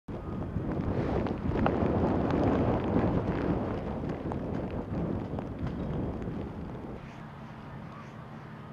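Strong, gusty blizzard wind buffeting the microphone, loudest in the first few seconds and easing off near the end.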